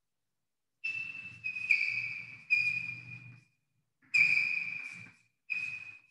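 Chalk squeaking against a chalkboard as letters are written: five short, high-pitched squeals, each starting abruptly and fading, one per chalk stroke.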